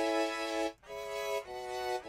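Sampled orchestral string section from a sustain-vibrato sample library, playing a loop of sustained chords. The sound cuts out briefly just before a second in, then comes back and moves to a new chord about halfway through: the sample cutting out on the higher notes.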